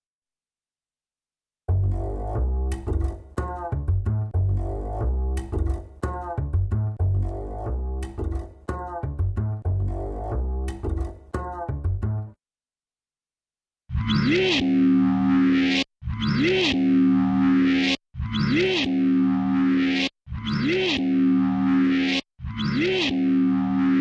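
Bass samples played through a distorted chorus effect plugin. First an upright bass loop plays for about ten seconds. After a short pause a louder, more distorted bass phrase repeats five times, each with a pitch swoop up and back down.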